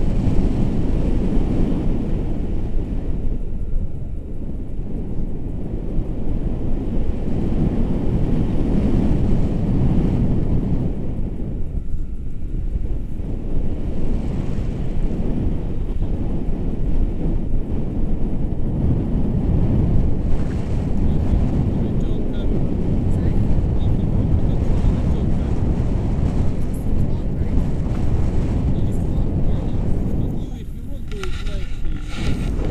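Wind rushing over a handheld action camera's microphone in paraglider flight: a loud, steady low rumble that swells and eases.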